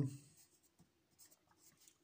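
Pencil writing on paper: faint, short scratches of graphite on the exam sheet as a few small characters are written.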